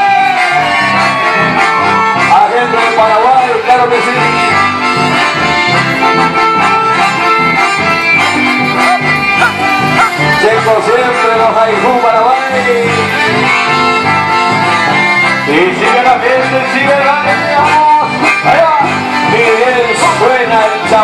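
Live band music led by accordions, with guitars and electric bass keeping a steady rhythm underneath.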